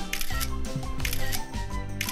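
A rapid series of smartphone camera shutter clicks over background music with a steady beat.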